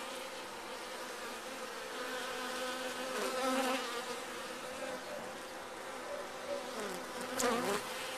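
Honeybees on an open hive frame buzzing in a steady, even hum. A brief sharper noise comes near the end.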